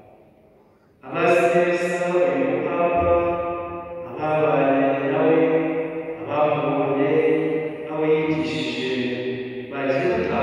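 A man's solo liturgical chant, sung into a microphone in long held phrases. It begins about a second in after a short pause, with brief breaths between phrases.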